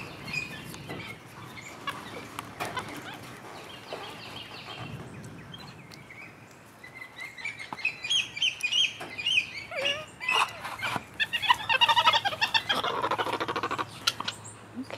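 Capuchin monkeys chirping: scattered knocks and rustles at first, then from about halfway through a run of short high chirps that grows busier and louder toward the end.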